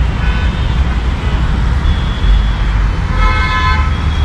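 City street traffic rumbling steadily, with vehicle horns honking a few times; the longest and loudest horn comes near the end.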